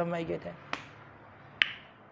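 A man's speech trails off, then two sharp clicks come a little under a second apart, the second with a short ring.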